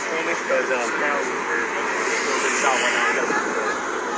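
A steady rushing noise, with faint, indistinct voices in it.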